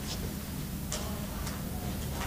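A few faint, light ticks, about three in two seconds, over a steady low room hum. They are likely small handling or footstep noises from someone at a chalkboard.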